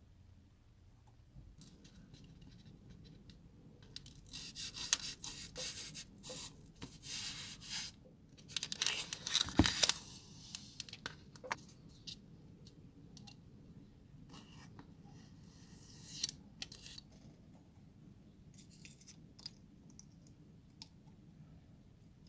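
Snap-off craft knife blade cutting through a small block of modelling foam: scratchy, rasping cutting strokes in two spells of a few seconds each, a shorter spell later on, and light clicks of parts being handled in between.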